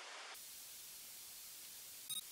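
Faint, steady hiss of recording noise that comes in suddenly about a third of a second in.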